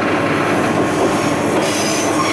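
Running noise of a two-car diesel railcar train heard at the gangway between the cars, over the steel gangway plates: a loud, steady rumble of wheels on rail, with a high hiss coming in near the end.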